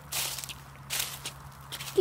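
Short rustling scuffs, like steps through grass or leaves: three of them, the first and loudest just after the start, one about a second in and one near the end.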